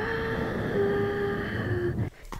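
Fingertips rubbing and scratching a fluffy microphone windscreen close to the mic, a steady rumbling rustle, under a woman's soft singing of long held notes that step down in pitch.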